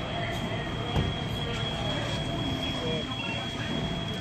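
Fire apparatus running at a fire scene: a steady engine rumble with a thin, steady high whine. Faint voices can be heard in the distance.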